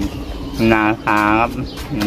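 Speech only: a man's voice speaking two short Thai phrases.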